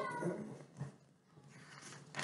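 Near quiet room tone: the drawn-out end of a woman's voice fades away at the start, followed by a single soft click a little under a second in and faint handling noise.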